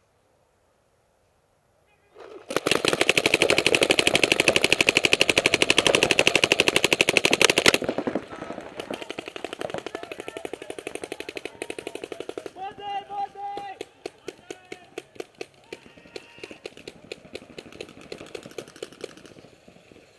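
Paintball markers firing rapid streams of shots. It begins suddenly about two seconds in and is loudest for about five seconds, close to the camera, then carries on more faintly as rapid, steady shooting.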